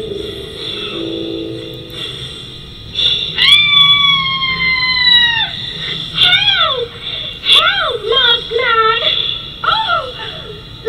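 High-pitched vocal cries from a recorded audio story: a long held cry lasting about two seconds that sags slightly in pitch at the end, then a string of short cries that swoop up and down, over faint music.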